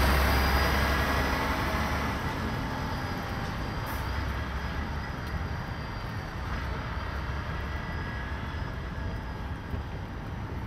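Road traffic: a large vehicle that has just passed close by fades away over the first couple of seconds, leaving a steady hum of city traffic.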